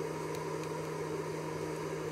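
Steady mechanical hum with a constant low tone and an even hiss, unchanging throughout.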